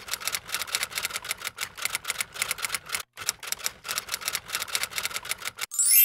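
Typewriter sound effect: rapid key clacks, about eight a second, with a short break about three seconds in. Near the end the clacking stops and a quick rising swish leads into a ringing bell ding.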